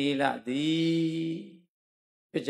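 A Buddhist monk's voice chanting Pali paritta into a microphone: a short phrase, then one long held note that fades out about a second and a half in.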